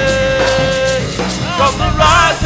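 Live gospel praise singing with band accompaniment. A voice holds one long note that ends about a second in, then the next sung phrase begins.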